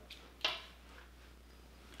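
A single light click, about half a second in, from handling a small shot glass and a glass liqueur bottle.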